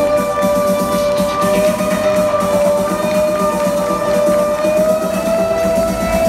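Live synth-pop music played loud through a concert PA in a theatre: a long sustained synth note held over a fast rhythmic pulse.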